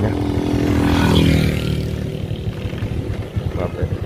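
A motorbike engine running steadily at road speed, heard from the rider's seat with wind on the microphone. A second motorcycle swells up and passes about a second in, then fades.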